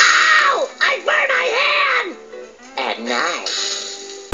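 Cartoon soundtrack: a high, strained cartoon voice crying out and talking over background music, thin-sounding with no bass.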